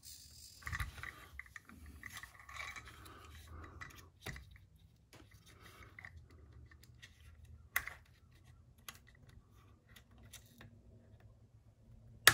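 Faint clicks and light rattling of small plastic and metal parts as an RC truck's front end is worked by hand, with two sharper clicks about a third and two-thirds of the way through.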